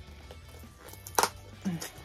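Quiet background music, with one short, sharp tearing sound about a second in as a sticker holding a spiral notebook shut is pulled at.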